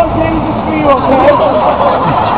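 Indistinct voices of people talking over a steady low rumble of city street traffic.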